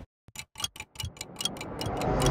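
Old film projector sound effect: a rapid run of dry clicks, about eight a second, starting after a brief silence, with a faint whirr swelling underneath toward the end.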